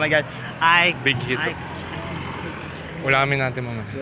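Speech: a voice calling 'Look at me!' several times, over a steady low hum of road traffic that shows most in the pause between the calls.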